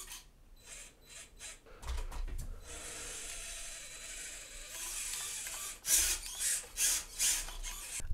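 Hobby Plus CR18P micro crawler driving, its small electric motor and metal portal and diff gears whirring steadily for about three seconds after a few clicks, then several short louder bursts of the motor and gears near the end.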